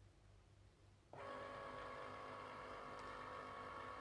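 Cricut Explore Air 2 cutting machine starting up about a second in: a steady motor whine with several held tones.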